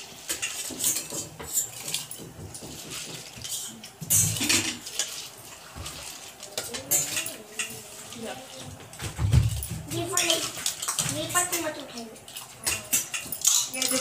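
Clatter of steel kitchen utensils and sloshing water as red lentils (masoor dal) are washed by hand in a steel bowl, with many small knocks and a low thump a little past the middle.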